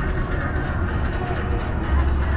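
Music with a heavy, pulsing bass beat playing over the car's running engine and road noise, heard inside the car's cabin.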